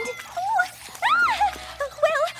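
A young woman's high-pitched whimpering: a few short whines that rise and fall in pitch, the loudest about a second in, with smaller ones near the end.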